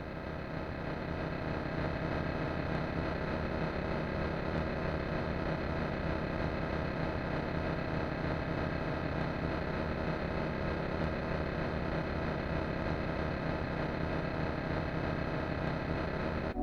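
Steady electronic drone opening a techno track, swelling up over the first couple of seconds and then holding level, with no beat yet.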